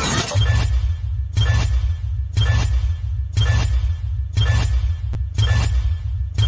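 Countdown-timer sound effect: a short noisy hit with a brief high electronic blip about once a second, in step with the count, over a steady low bass drone.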